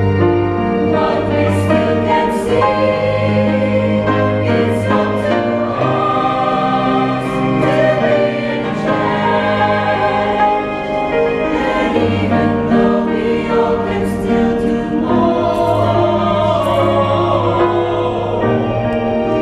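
Choir singing in parts with piano accompaniment: sustained chords changing every second or so, the sung words' consonants audible over them.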